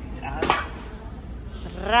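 A single sharp metallic clank of nonstick frying pans as they are lifted off a metal store shelf.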